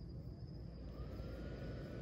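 Night-time outdoor ambience: a steady, high-pitched insect trill, typical of crickets, over a low rumble. A faint tone rises about halfway through and then holds.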